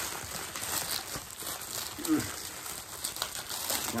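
Plastic packaging crinkling and rustling as it is handled and pulled out of a shipping box, in uneven bursts.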